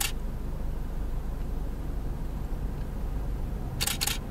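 Camera shutter clicking twice, once at the start and once near the end, each a quick double click, over a low steady rumble.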